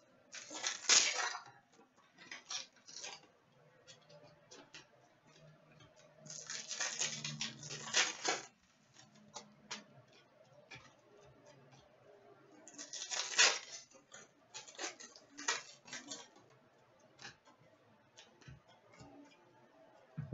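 Trading cards handled by hand: several bursts of cards sliding and flicking against each other, with light clicks and taps as cards are set down on a glass counter.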